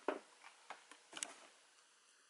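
A few short, light clicks and taps of a plastic squeeze bottle of paint being handled and set down on the work table. The loudest comes right at the start and a small cluster about a second later.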